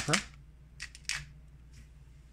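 Hand-held pepper mill grinding peppercorns in a few short grinding twists around a second in, with a fainter last twist near the end.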